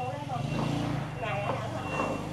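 Indistinct voices over a low, steady engine hum that swells between about half a second and two seconds in.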